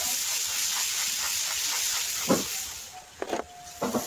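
Peacock shaking its fanned train, a loud steady rustling hiss that fades out about three seconds in. A few short thuds follow near the end.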